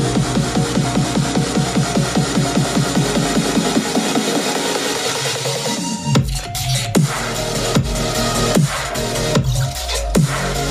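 Electronic music test track playing through a pair of Micca MB42 bookshelf speakers driven by a Lepai two-channel amplifier, picked up by a microphone about a foot and a half away. Quick repeating bass notes, about four a second, thin out into a build-up, and about six seconds in the track drops into deep falling bass sweeps roughly once a second.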